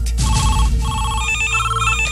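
Electronic desk telephone ringing in short repeated bursts of warbling paired tones, about two bursts a second. The bursts step up to a higher pair of tones about halfway through.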